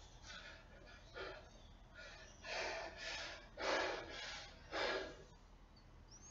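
A man's hard, gasping breaths, a sharp exhale roughly every second, as he strains through band-assisted pull-ups near failure at the end of a max-rep set.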